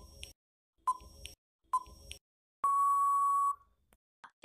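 Quiz countdown timer sound effect: three short beeps about a second apart, then one longer, steady beep of the same pitch lasting about a second, signalling that time is up.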